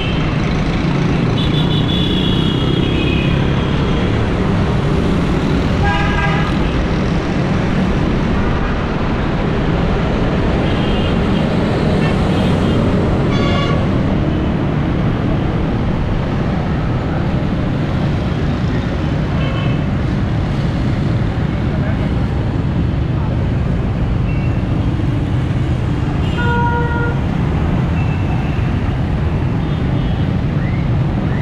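A small motorcycle running with steady engine and road noise while riding through city traffic, with surrounding vehicles' horns tooting briefly many times, about a dozen short honks scattered through.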